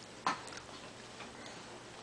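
A sharp light tap about a quarter second in, then a couple of faint ticks.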